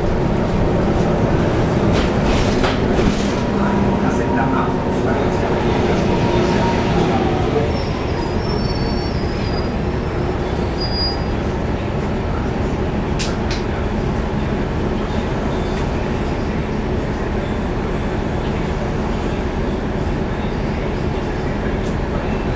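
Inside a 2011 NABI 40-SFW transit bus under way: its Cummins ISL9 diesel engine and radiator fan running steadily, with the ZF Ecolife automatic transmission nearly silent. The sound drops slightly about a third of the way in, and a couple of sharp clicks come a little past the middle.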